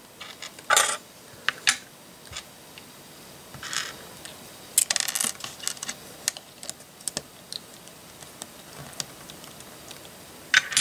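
Small 1x1 LEGO bricks clicking and rattling as fingers press them onto a brick-built figure: a scattered run of light plastic clicks, with a sharper one about a second in and a quick cluster about halfway through.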